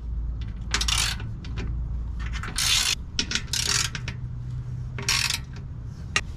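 Hand ratchet with a 13 mm socket clicking in about four short spells, with a few single clicks between, as the skid plate's front bolts are loosened.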